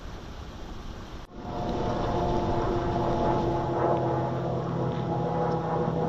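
Flowing river water as an even rushing hiss for about a second, then an abrupt cut to an airplane flying overhead: a steady engine drone with several held tones.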